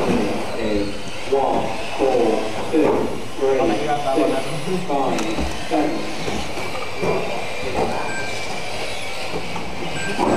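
Several electric 1/10 mini RC cars racing on a carpet track, their motors whining and rising and falling in pitch over and over as the cars accelerate, brake and pass by.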